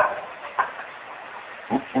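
A short pause in a man's preaching, with low steady hiss from the recording, one brief sound about half a second in, and his voice starting again near the end.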